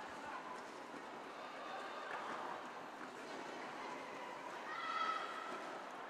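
Faint roller derby arena ambience: skaters' wheels rolling and scuffing on the hard sport-court floor under a low murmur of crowd and voices, with a brief faint call about five seconds in.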